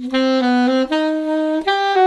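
Alto saxophone playing a short phrase of about six notes that step upward in pitch.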